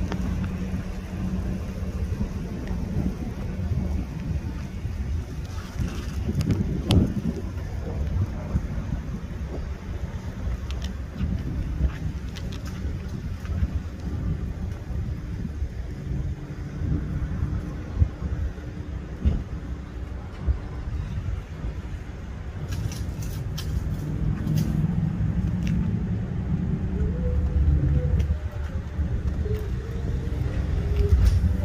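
Steady low rumble of urban outdoor background noise with a faint steady hum, broken by a few light clicks and taps.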